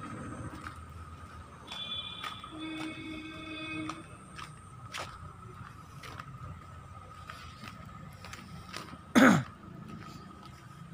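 A man close to the microphone coughs once, short and loud, near the end, over faint background noise.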